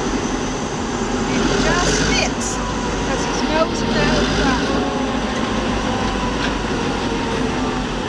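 A diesel locomotive idling with a steady low rumble, with people's voices faintly in the background.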